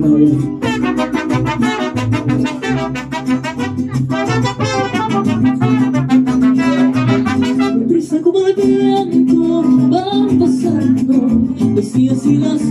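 Mariachi band playing the opening of a song: trumpets with a wavering, held melody over strummed vihuela and guitar and a guitarrón bass.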